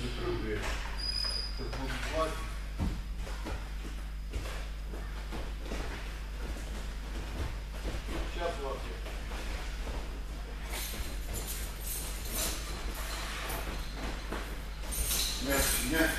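Indistinct voices in a large, echoing training hall over a steady low hum, with a faint knock about three seconds in; the voices grow louder near the end.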